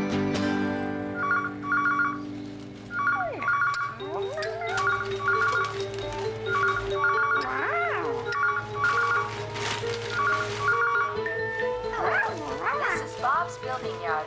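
Telephone ringing in repeated double rings, six ring-ring pairs a little under two seconds apart, over light background music, with sliding, wavering sounds between the rings and near the end.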